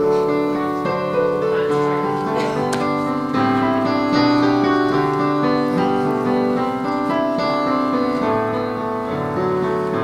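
Keyboard music: a piano playing slow, held chords that change every second or so.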